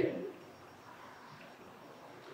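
The last word of a man's speech dies away in the room's echo, leaving quiet room tone for the rest of the pause.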